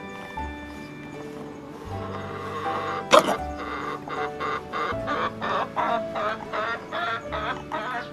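An old Nagoya Cochin rooster, weak with age, makes a run of short clucks, about two a second, starting a little after three seconds in, over background music. Just before the clucks begins there is one sudden sharp sound.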